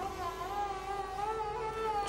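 Background score of several sustained tones that waver slowly in pitch, like held notes on bowed strings.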